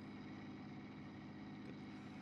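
Faint steady low hum inside a bus.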